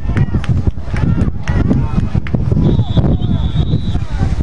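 Voices of spectators and sideline people talking and calling out near the microphone. About two and a half seconds in, a referee's whistle starts: one long, steady blast that lasts into the end.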